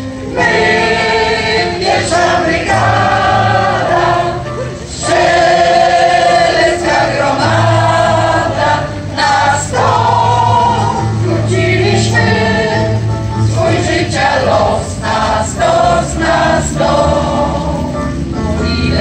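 Mixed choir of older women and men singing a Polish soldiers' song, sung phrase by phrase with short breaks, accompanied by an electronic keyboard.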